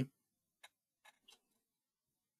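A few short, faint clicks in otherwise near quiet.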